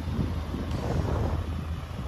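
Wind buffeting the microphone outdoors, a steady low rumble under an even hiss.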